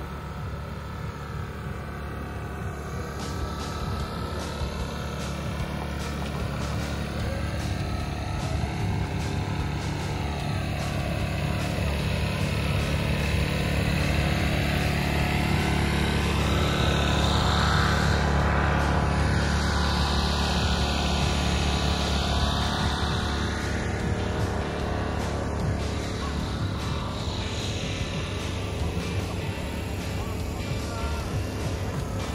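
A steady engine drone that swells to its loudest a little past halfway and then fades, heard with background music.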